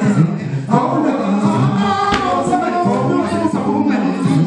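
A group of men singing a traditional Zulu sangoma song live into a shared microphone, several voices together.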